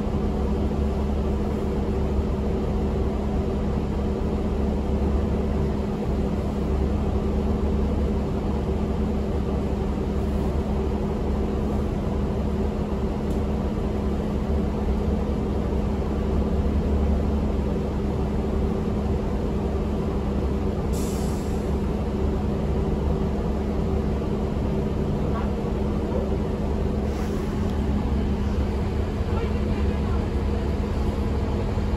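Interior of a 2006 New Flyer D40LF diesel transit bus: steady low rumble of engine and drivetrain with a steady hum. A short hiss of air comes about two-thirds of the way through and again near the end.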